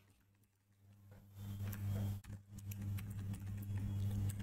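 Computer keyboard keys clicking as code is typed, a few scattered keystrokes. A steady low hum sets in about a second and a half in and runs under them.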